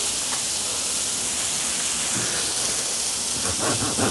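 Potatoes and onions frying in a pan, giving a steady sizzle.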